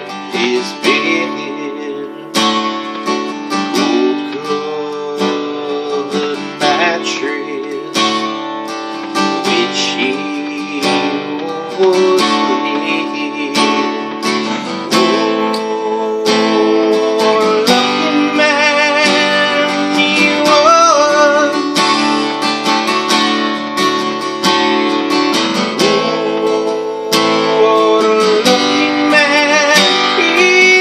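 Acoustic guitar strummed in chords. In the second half a man's voice joins in, holding long notes with vibrato.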